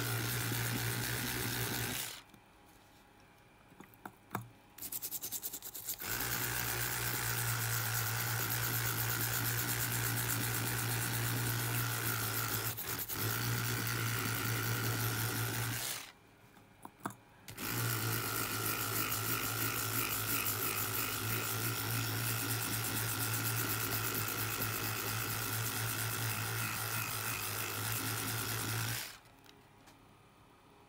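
Electric toothbrush buzzing steadily as its head scrubs corrosion off a circuit board, in three runs: it cuts off about two seconds in, starts again about four seconds later, stops for a second or two around the middle, then runs again until just before the end. A few light clicks fall in the first pause.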